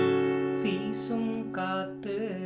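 A D minor chord on an acoustic guitar capoed at the fourth fret, struck just before and left ringing. From about half a second in, a man's voice sings a line of the melody over it.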